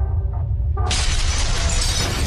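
Logo-intro sound effects: a deep steady rumble, then about a second in a sudden crashing, shattering burst of stone breaking that keeps going.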